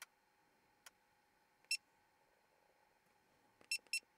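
Short electronic beeps over a near-silent background: one about halfway through and two in quick succession near the end, with a faint click just before the first.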